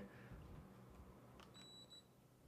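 Near silence, then a faint short high-pitched electronic beep about one and a half seconds in, lasting about half a second.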